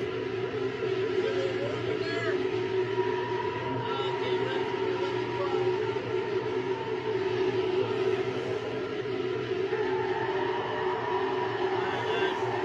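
A continuous, dense murmur of indistinct voices, with no words that can be made out, mixed with an eerie drone and a few short sliding tones.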